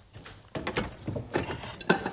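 Light knocks and clatter of a wooden cabinet being opened and wine glasses handled, ending near the end in a sharp glass clink that rings briefly.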